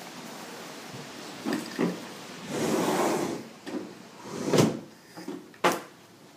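A few scattered knocks and thumps with a short rustling swell in the middle; the loudest is a single thump a little past halfway, and a sharp click comes near the end.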